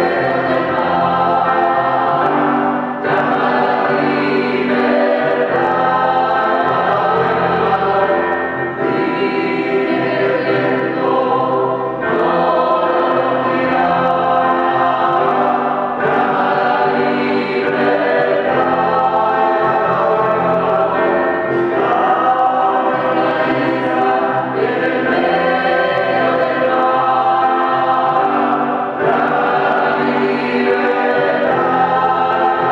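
A mixed choir of children's and adult voices singing, accompanied by an electronic keyboard.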